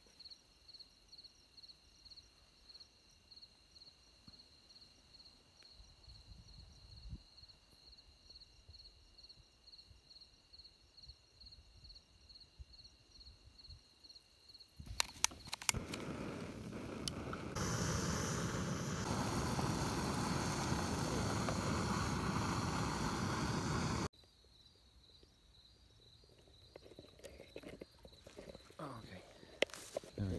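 Crickets chirping in a steady pulsing trill for about the first half. Then come a few clicks of a utility lighter and the steady hiss of a canister-top backpacking stove burner, the loudest sound here, which runs for about six seconds and stops suddenly, leaving the faint chirping again.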